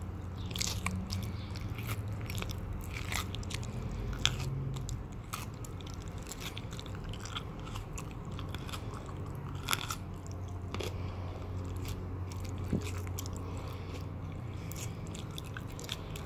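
A person's mouth close to the microphone making chewing and biting sounds: wet clicks and smacks of lips and teeth, scattered and irregular, over a steady low hum.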